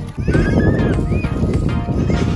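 Background music over busy beach ambience, with wind rumbling on the microphone. A high, wavering squeal like a child's voice comes about half a second in.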